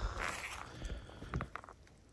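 Faint rustling and a few soft crackles of footsteps in dry fallen leaves, dying away to near silence near the end.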